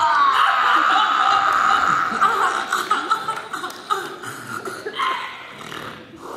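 Audience laughing together, loud at first and dying down toward the end.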